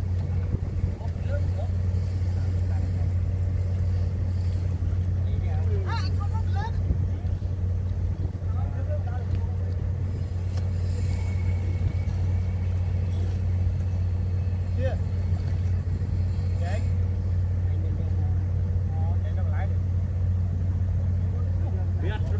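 A small engine running steadily with a low, even drone, with faint voices now and then.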